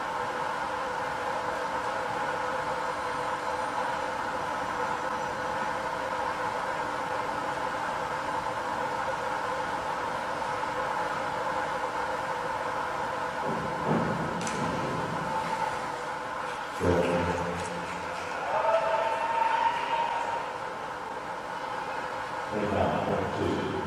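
Steady hum of an indoor pool hall. About two thirds of the way in there is a thump of the springboard and the splash of the diver's entry, and then a few brief shouts.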